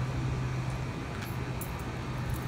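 Steady low hum of an outdoor air-conditioning condenser unit, with a few faint ticks a little over a second in.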